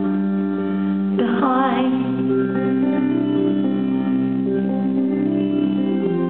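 Live band music: electric guitar and drum kit playing with sustained notes, one note wavering in pitch about a second in.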